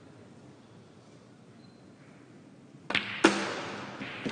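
Quiet hall, then about three seconds in a cue tip strikes the cue ball with a sharp click, and a third of a second later comes a louder, ringing clack as the cue ball hits an object ball.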